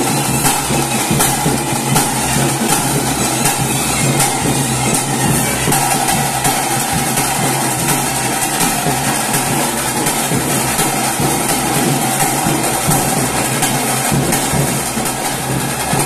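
Loud, continuous temple festival drumming with cymbals: rapid, dense drum strokes, with a held melody line faintly above.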